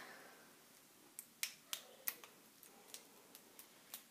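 A small elastic hair band being wrapped around the end of a braid by hand: a few faint, sharp snaps and clicks, the loudest about a second and a half in.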